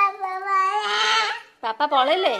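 A young child's long, drawn-out whining cry on one held note for about a second and a half, followed by the start of another cry near the end.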